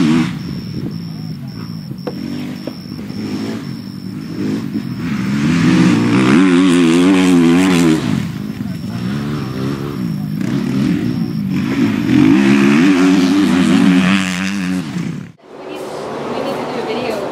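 Dirt bike engines running and revving, their pitch rising and falling again and again as the bikes ride. The sound cuts out briefly near the end.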